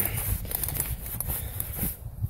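Fingers rubbing and scraping dirt off a freshly dug metal rosette: an uneven, scratchy rustling.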